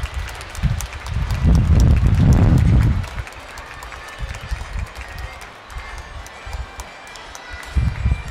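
Wind buffeting the microphone in uneven low gusts, loudest from about one and a half to three seconds in, with scattered light clapping from an audience.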